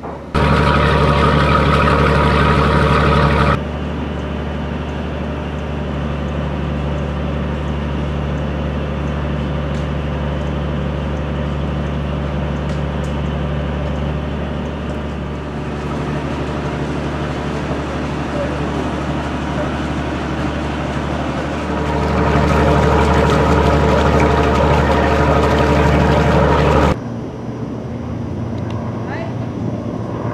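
Boat engine running steadily with a low hum. It is louder for about the first three seconds and again from about 22 to 27 seconds, each louder stretch starting and stopping abruptly.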